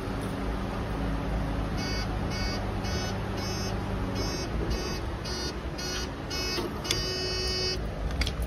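Car park pay-and-display ticket machine beeping, short beeps about twice a second for several seconds, then one longer beep near the end as the ticket is issued. A low steady hum runs underneath.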